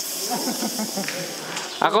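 A steady high hiss over faint background voices, with a man's voice starting near the end.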